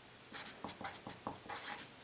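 Felt-tip permanent marker writing on a sheet of paper: a quick run of short strokes as a word is written out.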